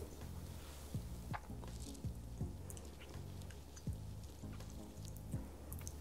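Quiet tasting sounds: a handful of soft clicks from sips and mouth sounds of people drinking mead from glasses, over a low steady hum.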